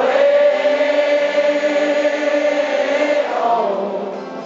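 Live rock band: a male lead vocal holds one long note for about three seconds over acoustic guitar, then slides down and fades near the end.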